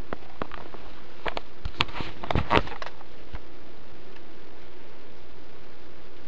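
Handling noise: a quick run of about ten clicks and knocks in the first three and a half seconds, over a steady background hiss.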